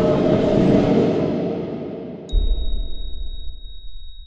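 Outro sound effect: a dense wash of sound fades away over the first two seconds. About two seconds in, a low thud and a single bright ding strike together. The high ring of the ding holds steady to the end.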